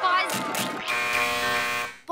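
Cartoon soundtrack: a brief wavering character voice, then a steady buzzing tone for about a second that fades out near the end.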